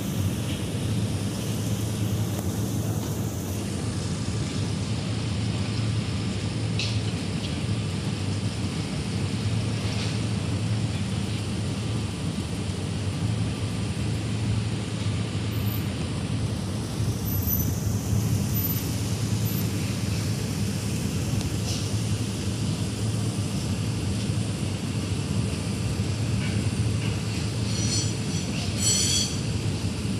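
Steady low droning hum of machinery, unchanging throughout, with a few faint clicks and a brief high chittering near the end.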